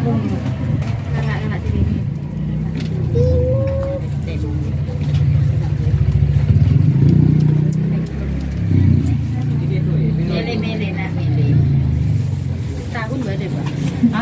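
Motor traffic running close by: a steady low engine rumble from passing vehicles, loudest about six to eight seconds in, with people talking faintly over it.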